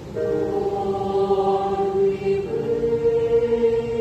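A mixed choir singing in harmony. The voices come in together just after the start on held chords, and the chord changes about halfway through.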